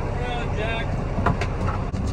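A man's voice over the steady low hum of the semi truck's idling diesel engine, with a couple of sharp clicks about a second and a half in.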